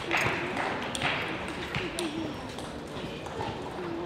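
Table tennis balls being struck and bouncing in a large sports hall: a string of sharp light clicks, about two a second, with faint voices in the hall.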